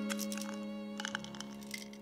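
Sad string music held and fading, over two short runs of crackling clicks, about a tenth of a second and a second in: medicine packaging being handled and pressed open in the hands.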